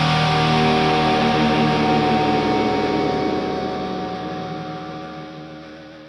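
The final chord of a hard rock song held on electric guitars, ringing on steadily and then fading away over the last few seconds.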